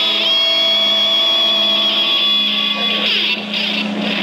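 A live ska band's final chord held and ringing out through the amplifiers as one steady sustained sound, which breaks up about three seconds in as voices come in.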